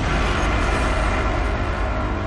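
A loud, steady rushing noise with a deep rumble. Sustained musical tones begin to come in near the end.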